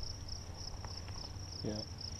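Insects chirping in a steady, high, evenly pulsed trill, several pulses a second.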